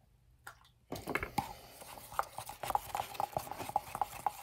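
A stick stirring thin Rockite cement slurry in a plastic cup: quick, irregular clicks and taps of the stick against the cup, starting about a second in.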